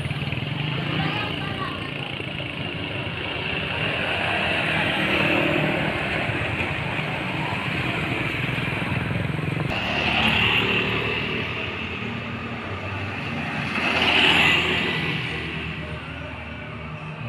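Motor vehicle engines and road traffic running steadily, swelling louder twice, about ten and fourteen seconds in, as vehicles pass.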